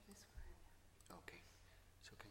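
Faint whispered talk, off-microphone, over a low steady hum; the clearest murmur comes about a second in.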